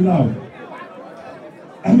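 Mostly speech: a man talking into a microphone trails off, then there is a pause of low crowd chatter, and he speaks again near the end.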